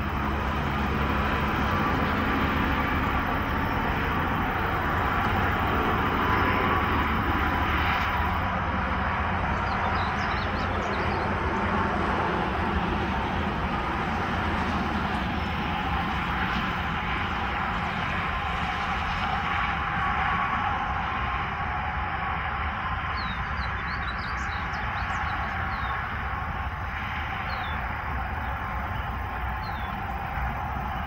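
Steady rumble of distant road traffic, with a few faint bird chirps now and then.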